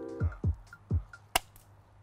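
Background music with a few deep beats, and a single sharp snap a little past halfway through: a balloon slingshot letting fly a steel ball bearing.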